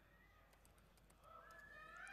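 Near silence: room tone, with a faint, distant voice coming in during the last half-second.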